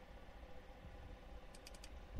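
Near silence: faint room tone with a quick run of four faint clicks near the end.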